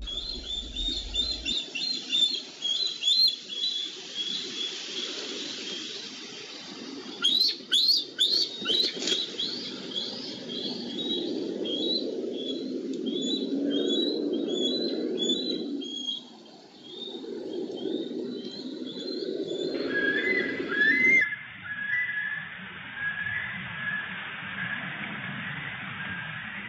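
Bald eagles calling in series of high, repeated chirps, with a burst of sharper, louder descending calls about seven to nine seconds in. A low rushing noise sits underneath.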